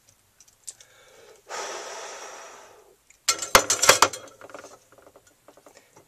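A long exhale fading out, then a quick clatter of hard clicks and knocks as the soldering iron is pulled off the joint and set back in its metal stand.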